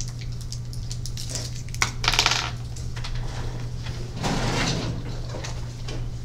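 Classroom handling noise: light clicks and clatter of small objects, a sharp click and short rattle about two seconds in, and a longer scraping noise about four seconds in, over a steady low hum.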